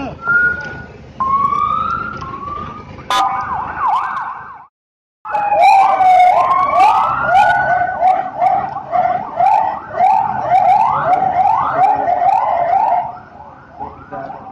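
Police vehicle sirens sounding, several at once, in repeated rising wails and fast yelps. There is a short break about five seconds in, then the overlapping sirens carry on.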